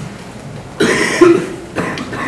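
A person coughing, loud and close, about a second in, followed by a shorter cough-like burst near the end.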